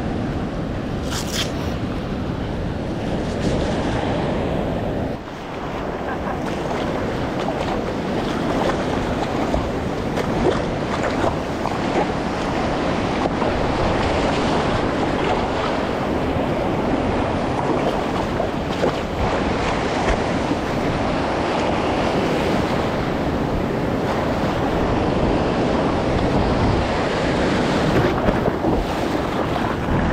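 Ocean surf breaking over a shallow reef and water washing around, with wind buffeting the action-camera microphone; steady throughout, with a brief drop about five seconds in.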